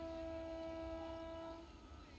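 Faint, distant train horn: one long, steady note held for under two seconds, from an approaching locomotive on an electrified Indian Railways line.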